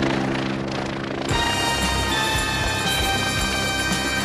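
A helicopter running overhead for about the first second, then cut off abruptly by film-score music with sustained held notes.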